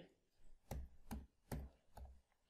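Computer keyboard keys being typed: about five faint, separate keystrokes a little under half a second apart.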